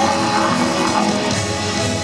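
Folk metal band playing live through a loud PA, with distorted electric guitars and drums in a dense, steady wall of sound.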